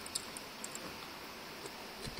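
Quiet background hiss with a few faint light ticks of a small screwdriver and fingers handling a laptop's metal heatsink.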